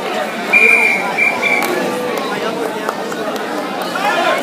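Spectators chatting in a gym, with a high steady electronic-sounding tone sounding three times in quick succession about half a second in.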